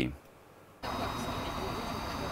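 A moment of near silence, then a steady outdoor background rumble with a faint high whine starts abruptly about a second in.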